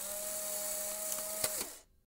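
Sound effect from a subscribe-button end-screen animation: a steady hissing whir with a low held tone, a sharp click about one and a half seconds in, then it fades out.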